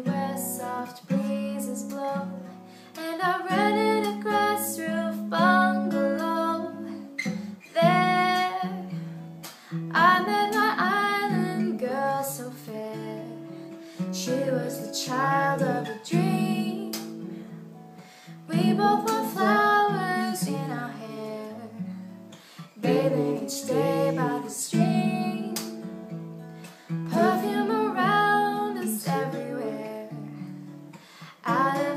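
Acoustic guitar strummed with a young woman singing over it in phrases.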